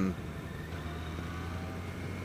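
Yamaha FJR1300 sport-touring motorcycle running steadily at cruising speed on a winding road: a low, even drone of engine and road noise as heard from the rider's seat.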